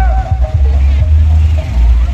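Loud music over a large outdoor sound system, dominated by a heavy, steady bass; the higher melody line over it drops out about half a second in.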